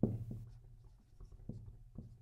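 Dry-erase marker on a whiteboard writing a word: faint, short scratching strokes of the felt tip on the board.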